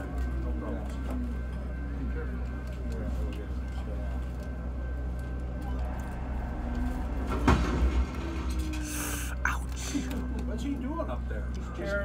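Diesel road-switcher locomotive's engine running under load with a steady deep rumble, as the crew tries to pull its derailed wheels back up onto the rails over rerail frogs. A single sharp clank about seven and a half seconds in.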